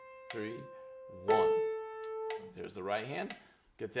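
Grand piano played slowly with the right hand: single melody notes struck about once a second, each ringing out and fading, the second note the loudest. A voice is heard briefly near the end.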